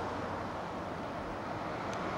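Steady outdoor background noise: an even rushing hiss with a faint low hum, and no distinct event.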